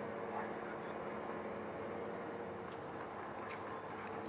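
Steady background hum and hiss with a faint even drone and no distinct events.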